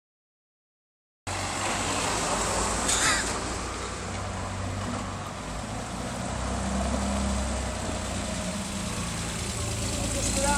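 3000cc V6 trike engine running as the trike rides up the street toward the listener, a steady low hum that grows louder from about halfway through. A brief high chirp comes about three seconds in.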